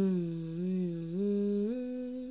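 A person humming one long unbroken note that slides down in pitch, then steps up twice in the second half.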